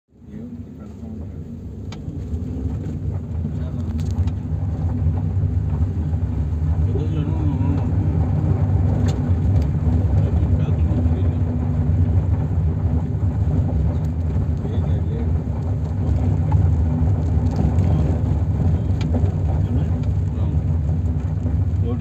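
Steady low rumble of a car's engine and tyres heard from inside the cabin while driving slowly, fading in over the first couple of seconds.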